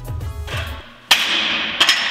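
Background music stops, then two sharp cracks come less than a second apart, each with a long ringing tail that fades away.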